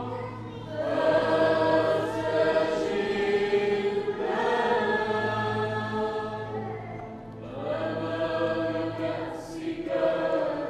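A choir singing a slow Maronite liturgical hymn in long held notes. The singing pauses briefly about half a second in and again near seven and a half seconds, between phrases.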